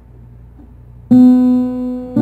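A faint low hum, then about a second in an acoustic guitar chord is plucked and rings out, slowly fading.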